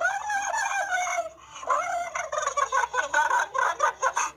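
A large dog making a weird warbling vocal noise. First comes one long wavering call, then after a short break a run of shorter, broken calls.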